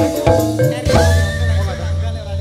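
Live campursari band playing an instrumental passage between sung lines, with quick gliding high notes near the start and a steady low bass note held from about halfway.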